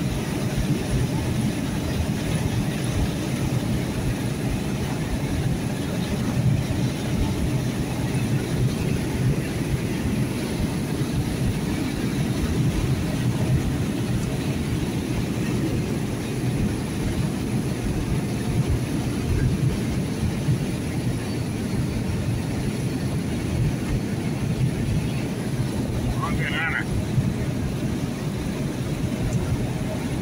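Steady low rumble of a car driving at highway speed, heard from inside the cabin: engine and tyre noise on the road. A brief higher sound comes in near the end.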